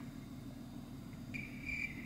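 Faint low hum, then about two-thirds of the way in a thin, steady high-pitched tone starts and holds.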